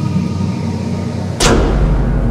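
Cinematic logo-intro sound design: a steady low drone with held tones, then about one and a half seconds in a single sharp boom-like hit, after which a deeper low rumble continues.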